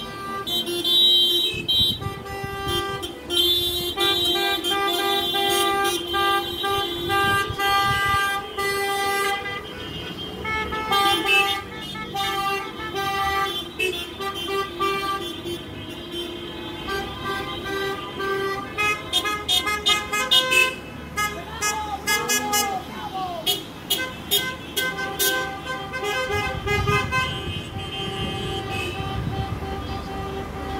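A long line of cars sounding their horns in protest, many horns held and overlapping at different pitches without a break, over the low rumble of passing traffic.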